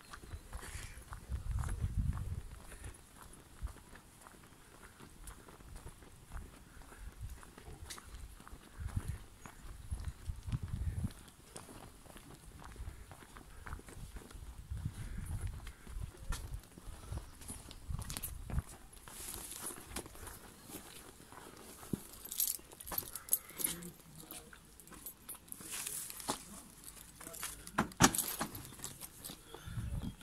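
Footsteps of a person walking along a pavement, with a few low rumbling bursts along the way. Sharp clicks come near the end, the loudest just before the end.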